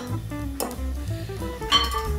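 Background music led by a plucked guitar, with a few light clinks of a wire whisk against a glass mixing bowl.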